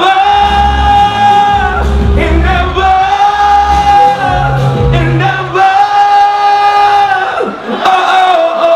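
A man singing long held notes into a microphone over a live backing track, the heavy bass dropping out a little past halfway.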